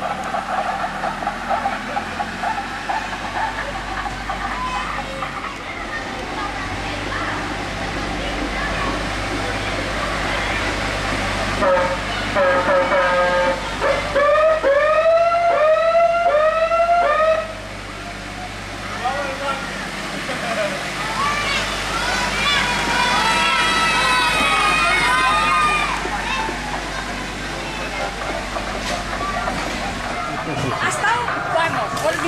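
A small tractor pulling a road train of passenger carriages, its engine running steadily as it drives along, with voices. Partway through, a rising-and-falling siren-like warble repeats about six times over a few seconds.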